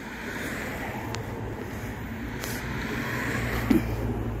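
Motor vehicle traffic running nearby: a steady low hum that comes in about a second in and builds, over a general noise haze.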